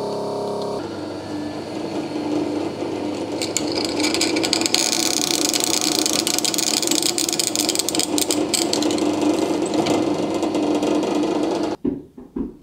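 Drill press running at its lowest speed, boring into stainless steel plate with a freshly sharpened bit: a steady motor hum under a dense grinding cutting noise that grows brighter about four seconds in and cuts off suddenly near the end.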